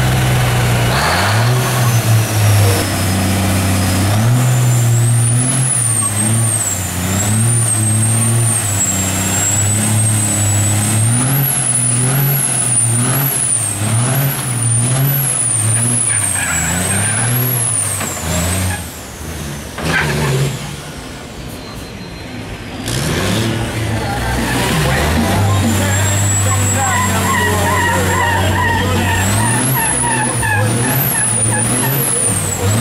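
Diesel semi-truck tractor revving hard again and again during a burnout, its engine note rising and falling over and over. A high wavering whine rides over the revs for much of the time. The engine eases to a lower, steadier run near the end.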